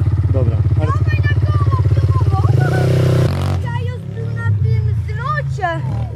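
Off-road vehicle engine idling close by with an even, rapid firing pulse, rising briefly before it stops abruptly about three seconds in, with men talking over it.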